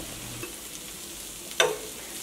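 Marinated chicken pieces sizzling steadily as they fry in oil on a cast-iron tawa, with one sharp click about one and a half seconds in.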